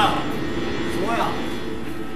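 Steady mechanical rumbling, with a short shout about a second in.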